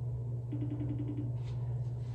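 Steady low room hum. About half a second in, a quick run of faint, rapid electronic beeps from a smartphone lasts under a second.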